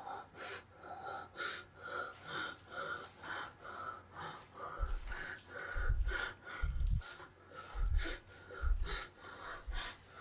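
Rapid, heavy breathing, about two breaths a second, as of a frightened person. Low thumps join in from about halfway through.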